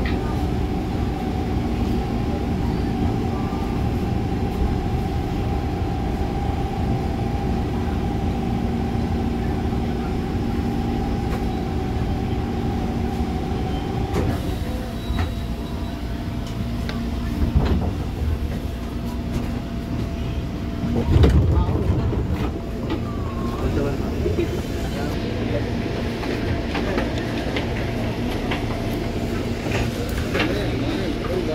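Electric commuter train coming to a stop: a steady hum with several tones from the train's drive runs until about halfway, then cuts out. About two-thirds in comes a loud low thump, and after it the murmur and shuffling of passengers getting on and off.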